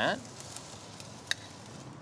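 Oiled swordfish skewers and vegetables sizzling on the hot grates of a gas grill on high heat: a steady hiss with a few small pops.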